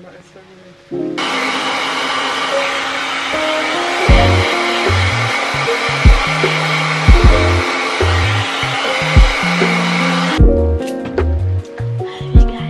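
Handheld hair dryer blowing on hair: it starts suddenly about a second in, runs steadily, and cuts off near the end. Background music with a regular bass beat plays underneath.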